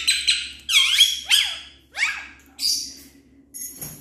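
Pet parrots squawking: about six sharp, high-pitched calls, each a quick rise and fall in pitch, loudest in the first second and a half.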